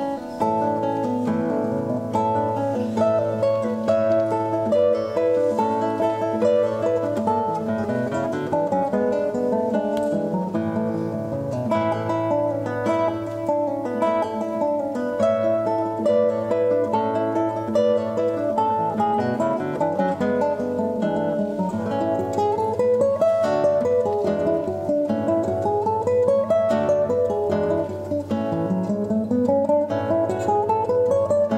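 Two classical guitars playing a duet, plucked fingerstyle, with quick runs of notes sweeping up and down in the last third.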